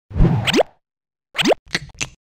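Cartoon-style pop sound effects: two quick plops, each with a fast upward-sliding pitch, about a second apart, followed by a couple of shorter pops near the end.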